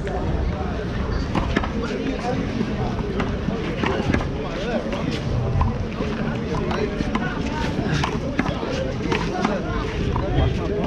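Indistinct voices of several people talking at a distance, over a steady low outdoor rumble, with scattered short sharp taps.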